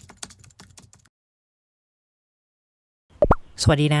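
Computer keyboard typing sound effect: a quick run of key clicks lasting about a second as the title text is typed out, then silence. Two quick pops follow near the end, just before a voice begins.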